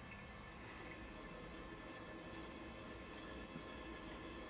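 Quiet, steady room tone: a faint hiss with a few faint steady hum tones.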